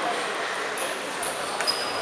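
Table tennis ball clicking off bats and table during a rally, a hit about every half second, over the hum of voices in a large hall.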